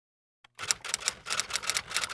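Typewriter keys clacking in a quick, uneven run of sharp strikes, about six or seven a second, starting about half a second in: a typewriter sound effect as title text is typed out letter by letter.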